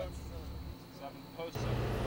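Faint low hum, then about one and a half seconds in a steady outdoor background noise with a low hum comes in.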